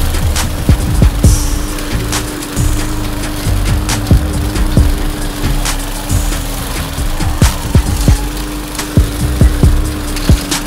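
Gasoline walk-behind push mower running with a steady hum, its blade cracking irregularly through sticks and dry leaves.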